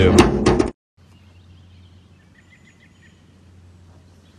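A voice ends a word, then after a cut there is faint open-air ambience with a low steady hum, and a short run of faint bird chirps a little past halfway.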